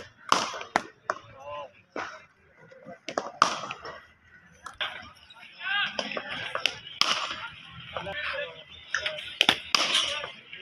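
Cricket bat striking the ball in the nets, with the ball knocking onto the concrete practice pitch: a string of sharp knocks at uneven intervals, the loudest about three and a half seconds in, seven seconds in, and near the end.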